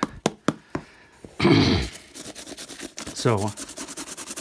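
Toothbrush bristles scrubbing dirt off a leather work shoe in quick scratchy strokes, with a few sharp knocks in the first second. A short loud vocal sound from the man breaks in about halfway, and a briefer one near the end.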